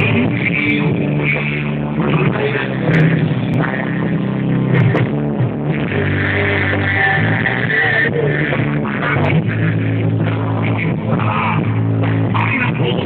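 Loud live rock music from a band on stage, with guitar and a steady bass line, playing without a break.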